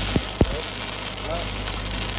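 Stick-welding arc crackling steadily as the electrode runs a downhill root pass in the bevel of a steel pipe joint, with two sharp pops in the first half second.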